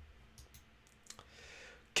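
Faint clicks of a computer mouse, a few light ticks in the first second or so, advancing a web page.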